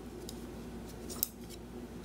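Knitting needles clicking and tapping together as a stitch is worked: a few faint clicks, with one sharper click a little past halfway.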